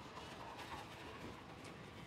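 Faint, steady background noise with no distinct event: low-level ambience from the broadcast feed.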